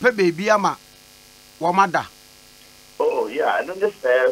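A man talking over a telephone line in short phrases, with a faint steady electrical hum heard in the pauses between them.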